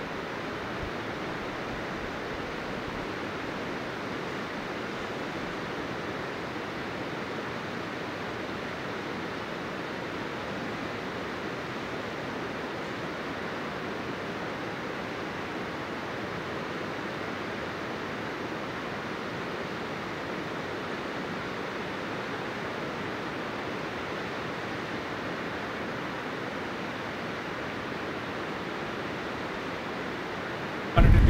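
Steady rushing of a creek waterfall: an even hiss of falling water that holds the same level throughout.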